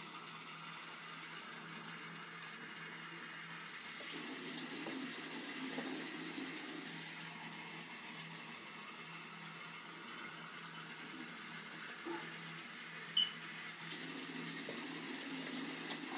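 Water running steadily from a bathroom faucet into a plastic basin as it fills with about two cups of water. A short knock sounds about thirteen seconds in.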